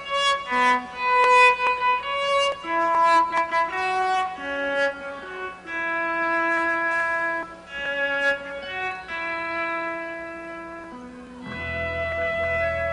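Live progressive rock band playing a gentle instrumental passage: a melody of held, singing notes on keyboards and electric guitar. Low bass notes come in near the end.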